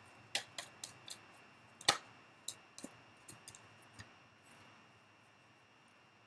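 Oracle cards being shuffled and handled: a series of light, irregular clicks and taps, with one louder snap about two seconds in, dying away after about four seconds.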